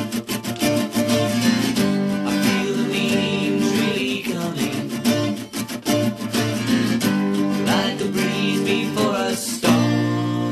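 Acoustic guitar strummed in a steady rhythm, from a live 1975 recording of an original song.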